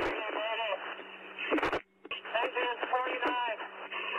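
A firefighter's distress call over a two-way fire radio: "Mayday, mayday, mayday", then "Engine 49, mayday, mayday, mayday". The voice is thin and narrow-band over a steady hum, with a short burst of static between the two calls. A mayday is the call for firefighters down or in life-threatening danger.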